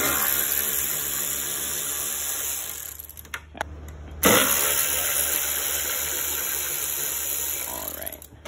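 Cordless drill driving a 5 mm hex bit, backing out the two bolts that hold a car's taillight: two runs of about three seconds each, each starting sharply, with a short pause between.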